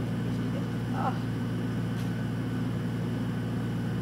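A steady low mechanical hum, with a short groan about a second in and a faint click about two seconds in.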